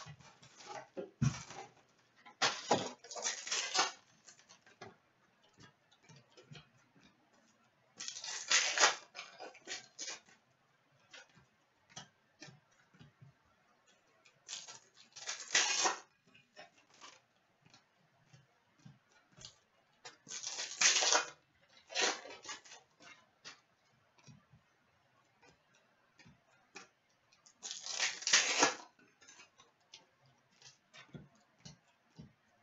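Hockey card pack wrappers being torn open one after another, a rustling rip about a second long roughly every six seconds. Between the rips come small clicks and taps as cards are handled and set down on a glass counter.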